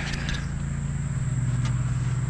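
Ford 3600 tractor engine idling steadily, a low even drone.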